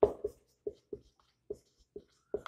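Marker pen writing on a whiteboard: a string of short strokes and taps, about six in two seconds, the first the loudest.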